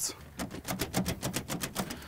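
Riveted aluminum sheet panel rattling as it is shaken by hand: a fast run of sharp metal clicks, about eight a second, starting about half a second in. The loose plates clatter at their riveted joints, unlike the silent tape-bonded panel.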